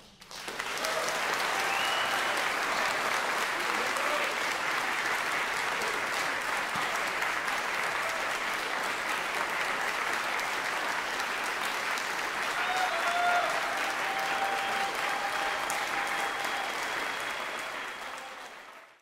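Audience applauding, breaking out suddenly and holding steady, then tapering off near the end.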